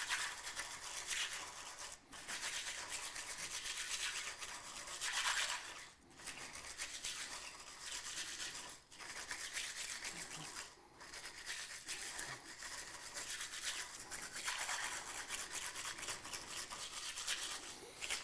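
A swizzle stick spun rapidly between the palms in a glass of crushed ice, giving a continuous scratchy churning of ice against the glass, broken by brief pauses every few seconds. The swizzling is chilling, diluting and mixing the drink.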